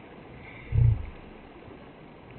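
A single short, low grunt from a downed, wounded wild boar, about three-quarters of a second in.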